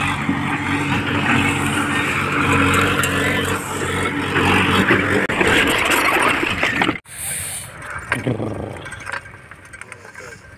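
An engine running steadily over a rough rumble of noise, cut off abruptly about seven seconds in, followed by a much quieter stretch.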